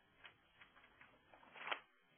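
Near silence broken by a few faint, irregular clicks, with one short, slightly louder noise near the end.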